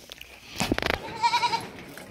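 A goat bleating once, a short wavering cry just past the middle, with a few short sharp sounds just before it.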